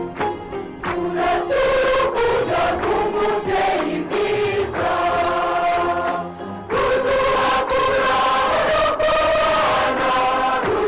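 Church choir singing a thanksgiving hymn. A little over halfway through, the singing dips briefly and then comes back louder.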